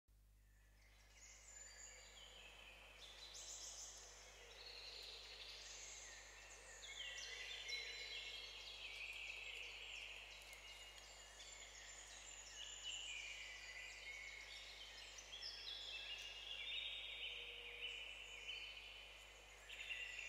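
Faint birdsong: many quick, overlapping chirps and warbled notes, starting about a second in.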